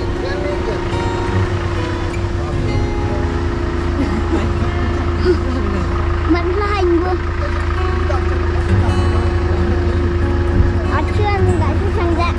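A steady low hum with one held tone running under it, with scattered voices of people talking in the background.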